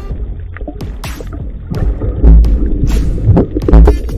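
Background music with loud, low rumbling surges of water moving against an underwater camera, about two seconds in and again near the end.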